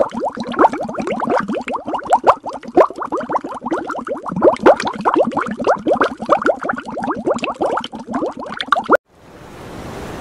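Underwater bubbling sound effect: a dense stream of quick bloops, each rising in pitch, several a second, cutting off abruptly about nine seconds in. A steady rushing noise then fades in.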